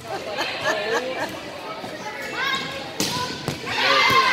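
Girls' voices calling out during a volleyball rally, with one sharp smack of a volleyball being hit about three seconds in.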